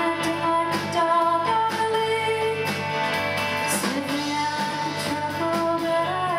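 A live band playing a song: strummed acoustic guitar and electric bass under a sung melody of held notes.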